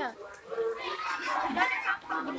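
Children and young people chattering and calling out in high voices, the mixed noise of children playing.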